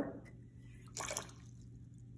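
A short splash of a few water drops falling into a plastic tub about a second in, as the lid is pulled from under an upside-down water-filled jar capped with a mesh screen. A low steady hum runs underneath.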